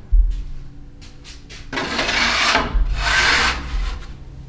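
A low thump, then two rasping scraping strokes about a second each, like something hard being rubbed or dragged across a rough surface.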